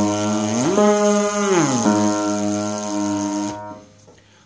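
A brass player's lip buzz sounding a pitched exercise that slides smoothly from note to note. It rises to a higher note held about a second, slides back down and holds a lower note, then fades out about three and a half seconds in. It is part of a high-range drill of a triad plus the sixth, back down, then up to the octave.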